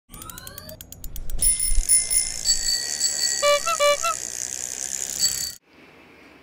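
Logo-intro sound effects: a slowing run of clicks with rising whooshes, then a steady hiss with high held tones, and a quick double ring of a bicycle bell near the middle. It cuts off suddenly about half a second before the end.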